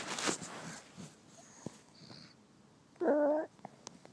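Rustling from the phone being handled, then about three seconds in a short, whiny vocal sound from a fussy baby, about half a second long and the loudest thing heard.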